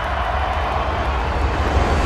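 A steady rushing noise over a deep low rumble, growing slightly louder: the noisy closing tail of the song's track, with no melody or voice in it.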